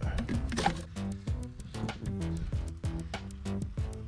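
Instrumental background music with a steady run of notes.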